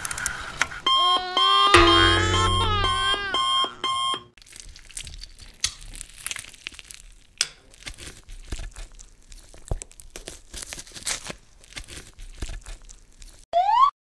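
Animated-cartoon sound effects. First comes a loud ringing effect with steady tones and wavering pitches, lasting about three seconds. Then a long run of faint, scattered clicks and crackles, and a quick rising whistle near the end.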